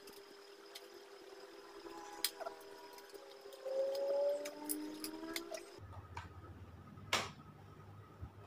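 Quiet handling of a WD Green M.2 SSD's cardboard and plastic retail packaging as it is opened: a few sharp clicks and a brief gliding squeak, over a faint steady hum that changes abruptly about six seconds in.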